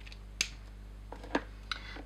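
A few short, sharp clicks over a steady low hum. The loudest click comes about half a second in, and fainter ones follow after a second.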